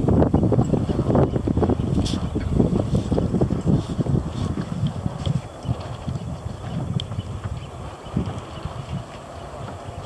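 Wind buffeting the microphone in uneven gusts, dying down over the last couple of seconds, with a few faint light clicks.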